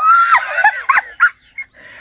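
A woman's high-pitched shriek of laughter. It glides sharply up at the start and breaks into short squeals that die away after about a second and a half.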